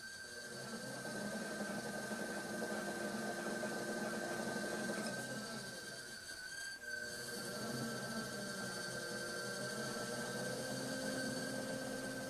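Electric pottery wheel running with a steady whine while a trimming tool scrapes clay from the foot of an upturned plate spinning on it.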